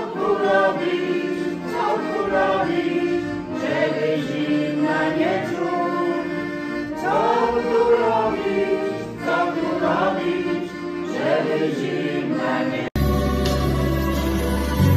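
A small mixed folk vocal group singing a Polish Christmas carol (kolęda) in harmony, accompanied by an accordion. It cuts off abruptly near the end into a different recording.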